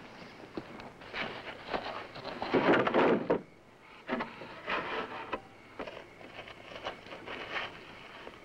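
Rustling, scraping and wooden knocks from someone moving about on straw under a wooden wagon. They come in several bursts, the loudest about three seconds in.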